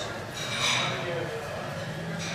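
Indistinct voices over the background noise of a working kitchen, with a brief burst of clatter about half a second in.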